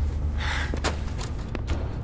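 A short, breathy gasp about half a second in, over a steady low hum.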